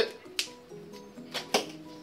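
A couple of sharp snips, about a second apart, as the excess tails of freshly tightened plastic zip ties are cut off, over soft background music.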